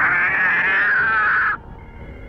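A cartoon cat lets out one long yowl, about one and a half seconds, sinking slightly in pitch before it cuts off suddenly.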